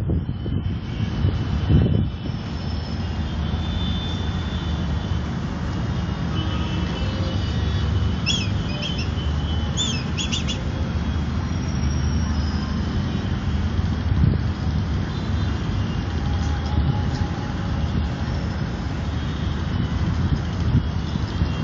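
A steady low outdoor rumble throughout, with a few short, high, gliding bird calls about eight to ten seconds in.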